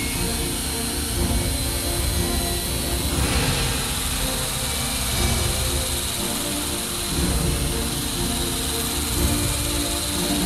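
Background music over the steady whine of an angle grinder running a non-woven blending disc against welded steel tube.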